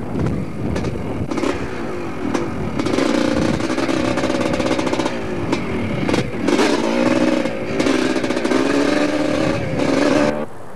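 Yamaha YZ250 two-stroke dirt bike engine running hard under throttle while riding, heard from on the bike, easing off briefly a few times before pulling again.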